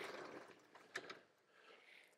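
Chalk scratching on a blackboard as words are written: a faint scratchy stroke dies away about half a second in, then a couple of short chalk strokes follow around one second.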